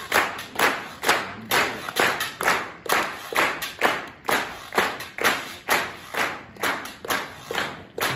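Audience clapping together in time, a steady beat of about two claps a second.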